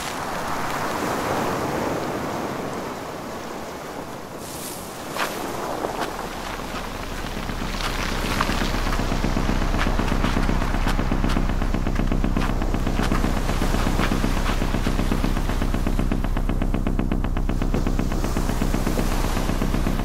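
Surf and wind noise at the shore with a few sharp clicks. From about six seconds a louder low steady drone with a fast, even rattle of pulses takes over and holds to the end.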